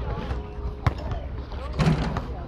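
Basketballs bouncing on an outdoor concrete court: a few sharp separate thuds, the loudest a little under a second in, with players' voices faint in the background.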